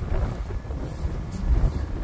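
Wind buffeting the microphone: a low rumbling noise that rises and falls.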